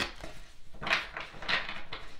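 A deck of tarot cards being shuffled by hand, heard as short bursts of cards rustling and slapping against each other, the strongest about a second in and again half a second later.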